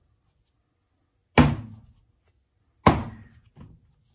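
Two dull thuds about a second and a half apart as a rolled clay coil is thrown down onto the worktable.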